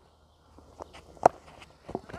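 A few light footsteps on dry dirt during a cricket delivery, with one sharper knock about a second and a quarter in.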